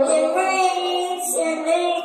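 A song playing: a high singing voice holds and moves between notes over backing music.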